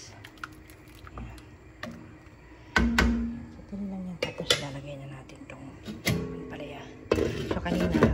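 Kitchen clatter of cookware: a metal spoon knocked against and taken from an enameled cast-iron pan, then a glass lid set back on the pan. It comes as several sharp knocks, the loudest about three seconds in and a cluster near the end.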